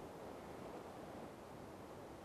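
Faint steady hiss of recording background noise: room tone.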